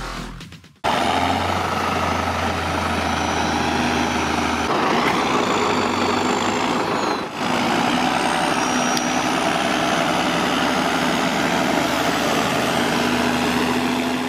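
A John Deere tractor's diesel engine running steadily as it pulls a silage trailer across a clamp of chopped rye. The sound starts about a second in as the music cuts out.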